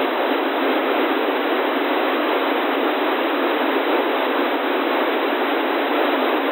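Steady FM radio hiss on an 11-metre CB channel, received on an Airspy HF Discovery SDR, with no readable station in it. The hiss is held to a narrow voice band by the receiver's audio filter. A weak station is trying to get through but cannot be heard.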